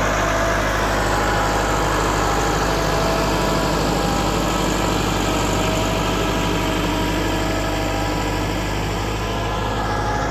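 Massey Ferguson tractor's diesel engine running steadily while it drags a laser land-leveler bucket through loose soil.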